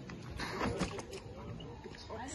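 Straining grunts from a strongman lifting a heavy Atlas stone, with a few short knocks or scuffs about half a second to a second in.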